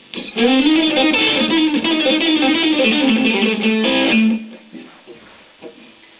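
Electric guitar on a clean amp setting with a little overdrive, playing a fast hybrid-picked lick: a rapid run of sixteenth-note triplets on a modified A minor pentatonic scale. About four seconds in it ends on a held note that rings out and fades.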